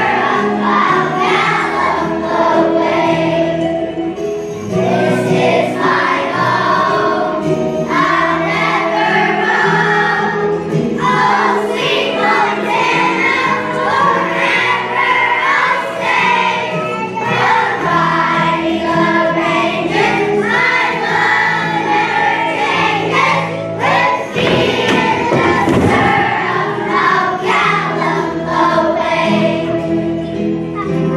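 A choir of young children singing a song together over an instrumental accompaniment.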